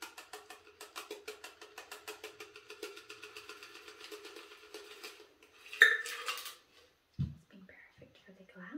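Rapid, even metal clinking, about six light clinks a second, as a copper cocktail shaker with a spring strainer is tipped and worked over a fine mesh strainer to double-strain a cocktail into a coupe glass. A louder ringing metal clank comes about six seconds in, and a short low thump a second later.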